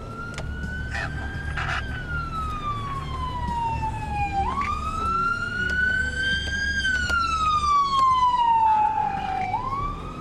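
Emergency vehicle siren on a slow wail: one tone falling gradually over a few seconds, then sweeping quickly back up, about twice. A low steady rumble of road and car noise runs underneath.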